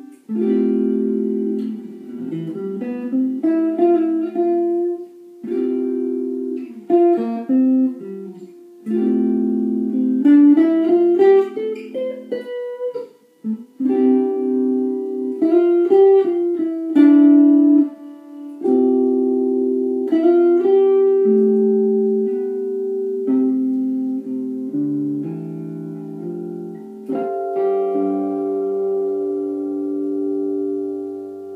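Single-cutaway electric guitar played through a small practice amp, mixing held chords with single-note runs, one of which climbs in pitch. The playing stops short a few times and starts again.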